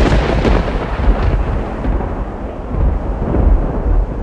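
Thunder sound effect: a loud clap that rolls into a long, deep rumble, swelling again a little after three seconds in.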